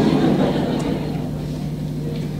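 Steady low hum with a haze of background noise, the room tone of an amplified hall.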